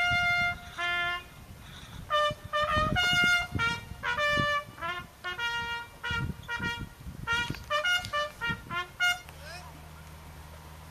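A bugle call played on a brass horn for a flag raising: a run of short and held notes drawn from the horn's open natural series, ending about nine seconds in.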